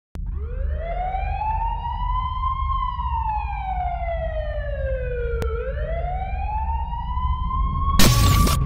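A siren wailing in a slow rise and fall over a steady low rumble. It climbs for about three seconds, slides down until about five and a half seconds in, then climbs again.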